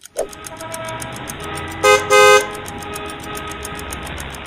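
Traffic jam: a steady low rumble of idling cars, with a car horn honking twice about two seconds in, a short toot then a longer one, the loudest sound here.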